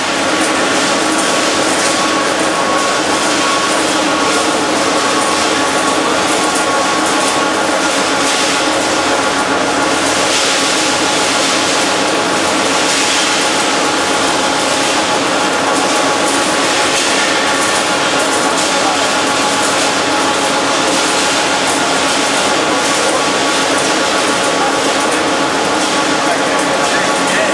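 Wire coiling machine running steadily, laying wire into a caged coil: a loud, even mechanical noise with a few faint steady tones running through it.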